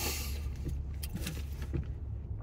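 A paper receipt rustling as it is picked up, a short crinkle at the start followed by a few light ticks, over a steady low rumble inside a vehicle's cab.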